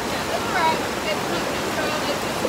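Steady rush of a fast-flowing river being waded across, with faint voices over the water.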